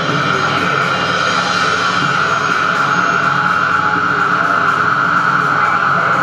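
Live experimental electronic music: a loud sustained drone with a strong steady high tone over a dense, noisy texture, unchanging throughout.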